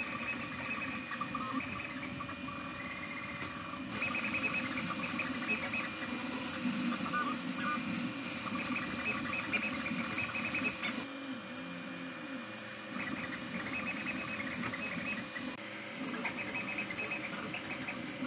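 Two Trees SK1 CoreXY 3D printer printing at high speed: its motors whine in short, quickly changing pitches as the print head darts about, over the steady hum of the print-head cooling fan. The sound is not very loud.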